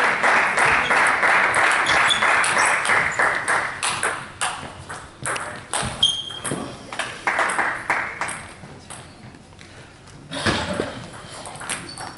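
Table tennis rally: the plastic ball clicking sharply off bats and table in quick succession, over a wash of crowd noise in the first few seconds. The hits stop about ten seconds in as the point ends.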